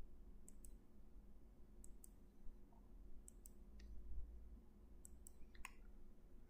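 Faint computer mouse button clicks, mostly in quick press-and-release pairs, coming every second or two as points of a polyline are set along an arc in drawing software.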